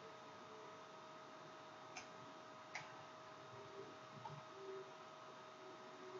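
Near silence with a faint steady hum, and two faint clicks of computer keyboard keys about two seconds in, less than a second apart.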